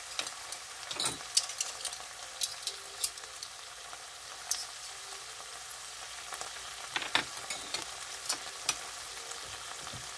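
White beans sizzling in a shallow enamel pan as the broth cooks down: a steady hiss with scattered crackles and pops, and a couple of louder clicks about a second in and near seven seconds.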